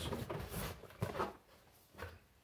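Cardboard product box being handled and opened: rustling and scraping with a couple of short knocks about a second in.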